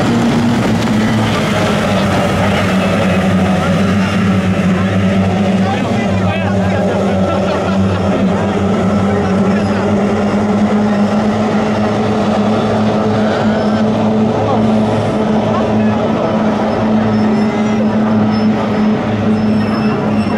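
Racing hydroplanes' two-stroke outboard engines running at full throttle, a steady drone that holds its pitch as the boats race.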